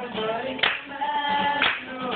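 Live singing with an acoustic guitar, with sharp hand claps about once a second keeping time.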